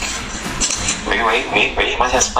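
A person speaking, starting about a second in, after a moment of background noise.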